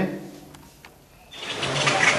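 Quiet room tone with two faint clicks, then, a little past a second in, steady outdoor background noise, a broad hiss, cuts in abruptly and holds.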